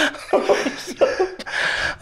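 Men laughing in short, breathy bursts.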